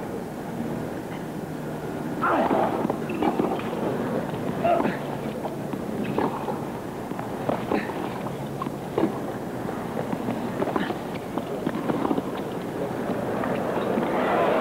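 Tennis rally: a series of sharp racquet-on-ball strikes about every second and a half over a steady crowd murmur, with crowd noise swelling near the end as the point finishes.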